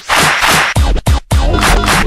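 Vinyl record scratched by hand on a turntable, fast scratches chopped by mixer fader cuts over a backing beat, with brief drops to silence at the start and about a second in.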